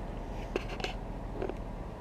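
Jeep Wrangler stopped on the trail with its engine idling as a steady low rumble, with a few faint clicks.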